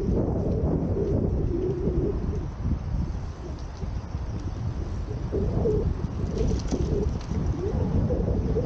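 Wind rumbling on the microphone of a camera riding on a moving bicycle, with a wavering low hum over it and traffic noise beneath.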